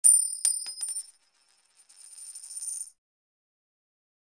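High, bright metallic chime sound effect: a quick run of about five ringing strikes in the first second, then a fainter shimmering ring that swells and cuts off suddenly at about three seconds.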